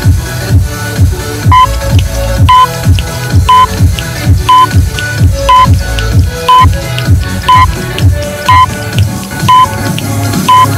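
Electronic dance music with a steady kick drum at about two beats a second, and a short high beep once a second from about a second and a half in, marking a workout countdown timer's last seconds.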